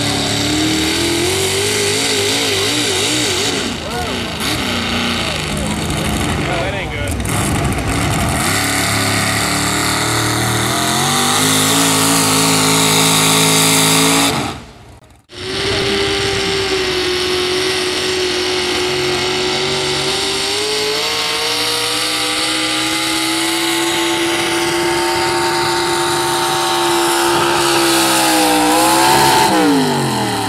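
Modified four-wheel-drive pickup truck engines running at high revs under full load while dragging a pulling sled. The pitch climbs as the first truck gets going. After a brief break about halfway, a second truck's engine holds a steady high pitch, then drops sharply near the end as the driver lets off.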